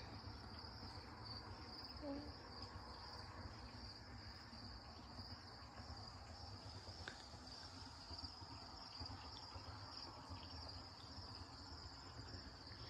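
Faint, steady high-pitched chorus of crickets, with a low rumble underneath.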